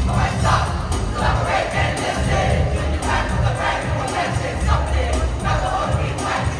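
A large group of students singing and shouting together in unison over music, with heavy bass underneath.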